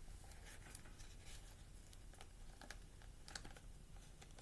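Near silence: quiet room tone with a low steady hum and a few faint scattered clicks.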